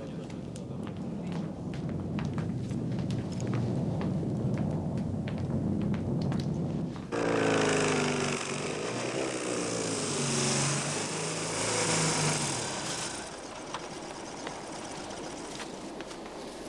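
A car arriving: from about seven seconds in, its engine note falls as it slows, over a loud hiss, and dies away a few seconds later. Before that, a low rumble.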